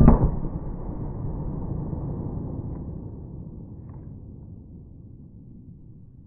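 A .38 Special +P handgun shot into a ballistic gel block: a sudden loud boom, then a low rumble that fades slowly over about five seconds.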